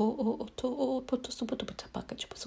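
Light-language vocalizing: a voice rattles off rapid, repetitive nonsense syllables, with many sharp clicks among them.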